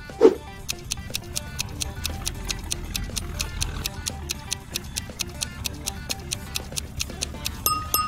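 Countdown-timer clock ticking: rapid, evenly spaced ticks, about four a second, over soft background music, ending in a short ding near the end.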